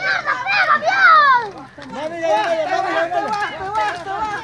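Children and onlookers shouting and calling out, several voices overlapping, urging on the donkey riders, with one loud falling shout about a second in.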